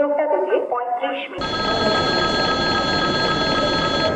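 Railway public-address audio cuts off about a second and a half in. The rumble of a train rolling through a station follows, with a steady high-pitched ringing tone over it.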